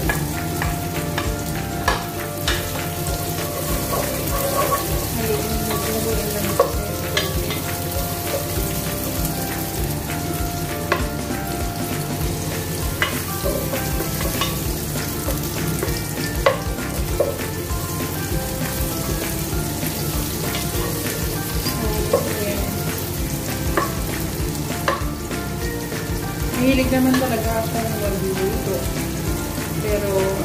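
Minced garlic and diced red onion sizzling in butter in a nonstick pot, stirred with a wooden spatula that now and then scrapes and clicks against the pot.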